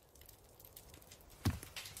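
Horse hooves clip-clopping at a slow walk, a sound effect in a dramatized reading. The first two hoof strikes come about one and a half seconds in, after a faint lull.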